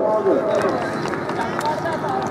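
A man's voice calling the kabaddi commentary, tailing off about half a second in. A steady din of many voices from the crowd runs underneath.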